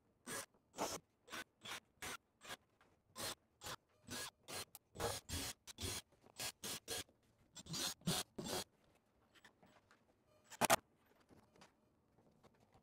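An acrylic bathtub being shifted into place, giving a quick run of short scrapes and rubs, two or three a second, that thin out near the end, where one louder scrape stands out.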